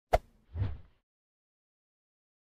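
Button-tap sound effects: a sharp click, then about half a second later a softer, duller pop.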